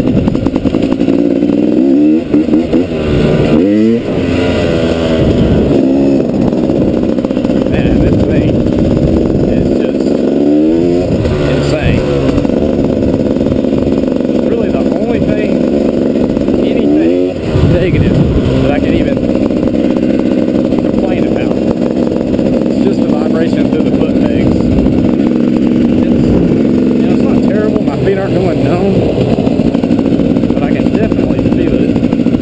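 2012 KTM 250 XC-W single-cylinder two-stroke dirt bike engine running under way, with the revs climbing and dropping sharply a few times, about two, ten and seventeen seconds in, as the rider works the throttle and gears.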